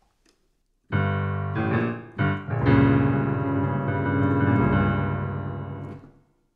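Piano playing a short musical phrase: silence, then a few struck chords starting about a second in, and a final chord held and dying away near the end.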